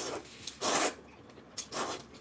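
Noodles being slurped off chopsticks: three short slurps, the middle one the loudest.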